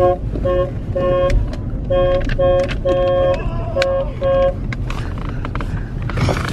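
Limousine's car horn honked in a quick rhythmic series of about ten short toots, stopping about four and a half seconds in, over the low rumble of the car's engine.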